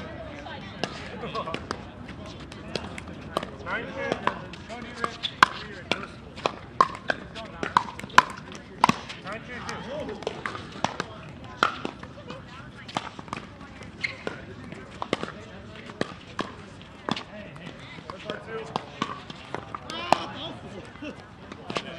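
Pickleball paddles striking plastic balls: many sharp pops at irregular intervals, some with a brief hollow ring, over indistinct voices of players.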